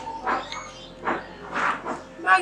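A dog barking in the background, three short barks.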